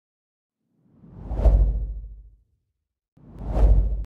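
Two whoosh sound effects of an animated logo intro, each with a deep low rumble: the first swells up and fades over about a second and a half, the second rises near the end and cuts off suddenly.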